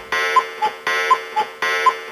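An electronic alarm-like beeping pattern closes the song. It is a held buzzy tone followed by two short higher blips, repeating about every three-quarters of a second.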